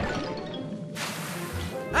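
Cartoon background score with a sudden sound effect: a noisy rushing burst about a second in, lasting under a second.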